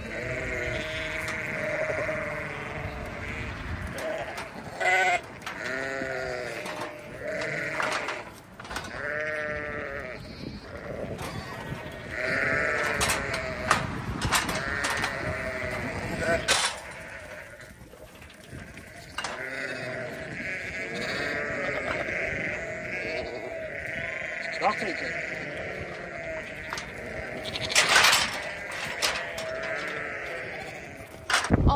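A flock of ewes and lambs bleating continuously, many wavering calls overlapping, with a few knocks and clatters, the loudest near the end.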